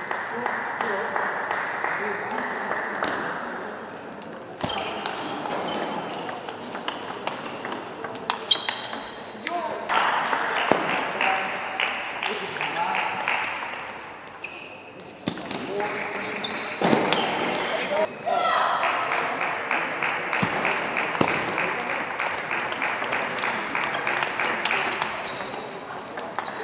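Table tennis rallies: the plastic ball clicks sharply off bats and table in quick alternation, over a hall's background of voices. Several short rallies are cut together, so the background changes abruptly every few seconds.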